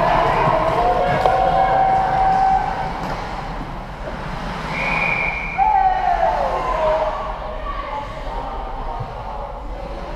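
Shouting voices in an ice hockey rink, with a short, steady high whistle blast about five seconds in as play stops, followed by a falling shout.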